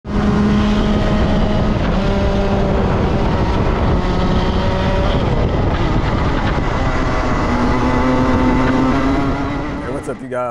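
Racing kart engine running at high revs, heard from onboard with a rush of wind and road noise; its pitch holds, dips, then climbs again, and the sound fades out near the end.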